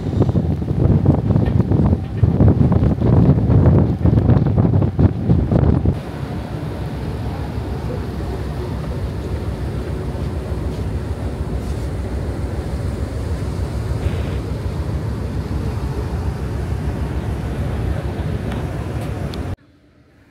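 Wind buffeting the microphone on the open deck of the MV Victoria passenger ship for about six seconds. After that comes a steadier, quieter rush of wind and water along the moving hull, with a faint steady engine hum.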